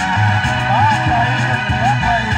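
Electric keyboard music played loud through PA loudspeakers: sustained chords over a bass note that shifts, with a short sliding lead note about a second in and again near the end.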